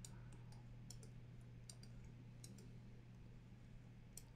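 Near silence: a faint steady low hum of room tone, with a dozen faint short clicks scattered through it.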